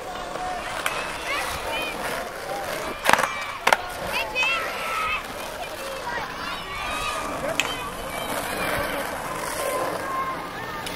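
Skateboards and scooters rolling and clacking on a concrete skate park, with a few sharp board-on-concrete impacts. The two loudest come about three seconds in, half a second apart.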